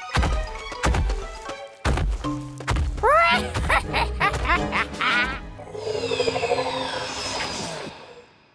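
Cartoon soundtrack: music with three heavy thuds of a cartoon dinosaur's footsteps in the first three seconds, then a character's squeaky cartoon laugh. Near the end come several falling, whooshing sound-effect sweeps.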